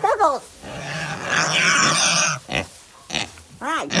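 Pig making a long, rough, noisy sound with a low rumble, its snout right against the phone, starting about a second in and lasting over a second. A person laughs at the start and again near the end.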